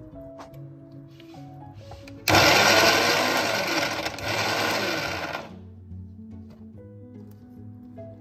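Electric mixer grinder switched on for about three seconds, its motor and blades grinding chopped vegetables into a paste in a steel jar, starting and stopping abruptly. Background music plays under it.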